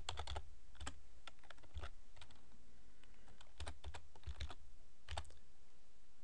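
Typing on a computer keyboard: keystrokes in short, irregular bursts with brief pauses between them.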